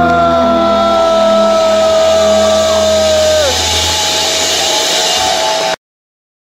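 Live rock band holding out a song's final note: a long, steady high note over a sustained low drone. About three and a half seconds in, the high note slides down and fades. The recording then cuts off abruptly near the end.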